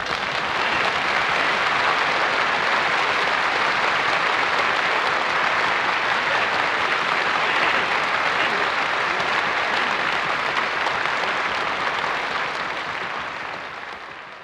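Live audience applauding at the end of a song, a dense, steady clapping that fades out near the end.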